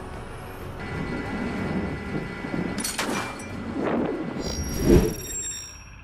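Oshkosh JLTV's diesel engine running as it drives over gravel, with the rumble swelling and easing. A sharp crack comes about three seconds in and a heavy thump near five seconds, the loudest moment.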